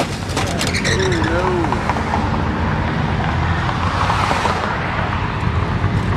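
Street traffic with car and motorcycle engines running, and voices. It opens with a sharp crack and about a second of clattering, with a brighter rushing swell about four seconds in.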